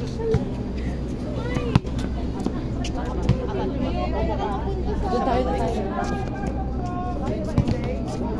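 A volleyball being struck in a passing exchange: three sharp slaps of ball on forearms and hands, a second or more apart, over several people talking.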